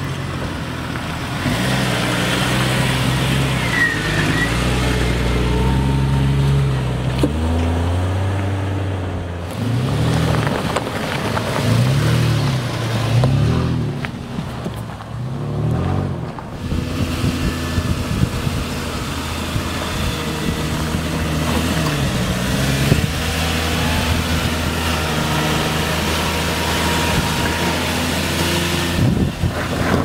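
Engines of lifted off-road SUVs working along a rough dirt trail, the revs rising and falling again and again as the drivers work the throttle over the ruts.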